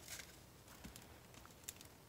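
Near silence: room tone with a couple of faint ticks from playing cards and card boxes being handled.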